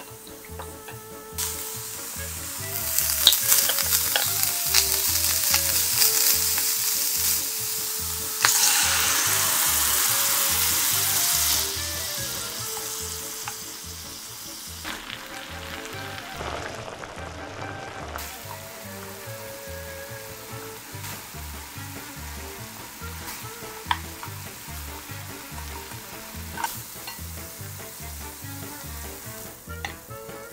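Tofu and ground meat frying in a hot pan: a steady sizzle that swells about three seconds in, jumps louder again about eight seconds in, then settles to a quieter sizzle for the second half, with occasional stirring.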